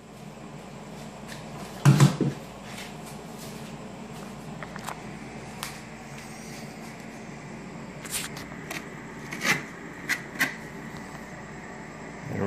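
Several sharp knocks and taps on a wooden table top over a steady low workshop hum; the loudest is a double knock about two seconds in, with lighter taps later on.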